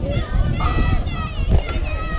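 Several high voices of girls' softball players shouting and calling over one another, with wind rumble on the microphone.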